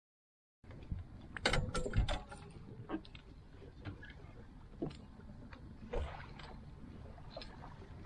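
Fishing gear being handled on the deck of a small boat: irregular sharp knocks and clicks, thickest in the first couple of seconds, over a steady bed of wind and water noise. The sound drops out completely for a moment right at the start.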